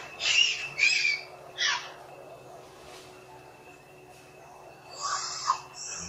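Macaque squeals: three short, loud, high-pitched calls in quick succession in the first two seconds, the third sliding down in pitch, then another short cluster of calls near the end.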